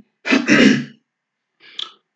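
A man clearing his throat once, a rough burst lasting under a second.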